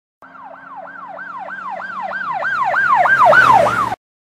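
Emergency vehicle siren in a fast yelp, its pitch sweeping up and down about three times a second. It grows steadily louder and cuts off suddenly just before the end.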